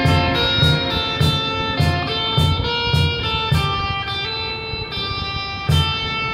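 Electric guitar played through an amplifier, a melody of held single notes changing every half second or so, over a steady drum beat.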